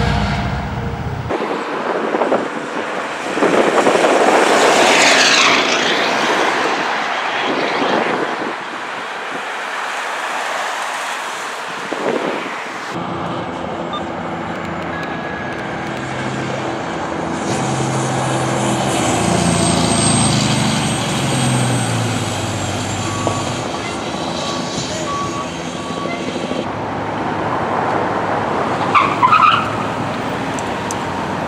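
Emergency vehicles passing on the road in several short clips cut together: fire engines and a fire department car going by, with engine and road noise. Siren glides rise and fall a few seconds in and again near the end.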